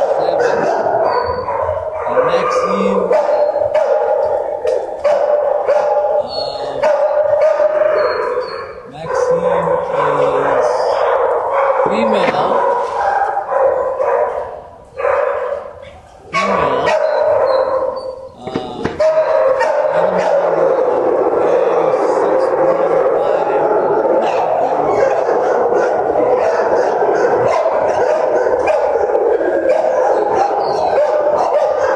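Many kennelled dogs barking and yipping at once, a continuous din with a few brief lulls around the middle.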